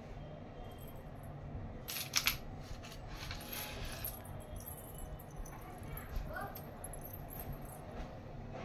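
Small silver anklet bells and chain links jingling and clinking as the anklets are handled: a few bright chinks about two seconds in and a brief jingle a second later, over steady low background noise.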